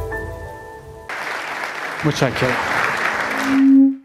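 Intro music fading out in the first second, then an audience applauding in a hall, with a brief voice partway through. Just before the end, a steady low tone rises to become the loudest sound.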